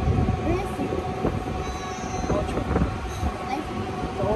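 Amusement-ride car moving, with a steady electric hum and low rumble, and scattered voices over it.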